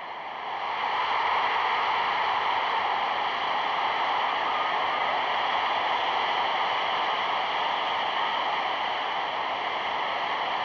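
A steady rushing noise with no distinct shouts, cheers or strikes in it, growing louder about a second in and then holding even.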